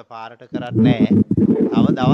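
A man's voice speaking close to the microphone, louder and fuller from about half a second in.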